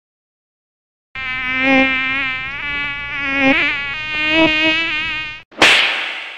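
Mosquito buzzing, a high whining hum that wavers up and down in pitch, starting about a second in and stopping abruptly. Just after it stops comes a sudden loud slap, the loudest sound here, with a long fading tail.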